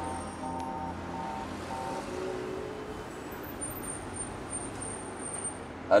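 Steady low hum of street traffic and a car engine. A short musical tune of held notes dies away in the first two seconds.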